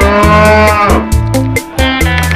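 An elephant trumpeting once, a drawn-out call that bends in pitch and falls away about a second in, over background music with a steady beat.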